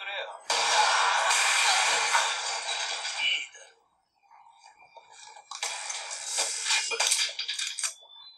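Soundtrack of a Japanese tokusatsu TV episode playing with its low end filtered out, so it sounds thin: a loud noisy rush of sound effects for about three seconds, then brief dialogue and a run of sharp crackling clicks near the end.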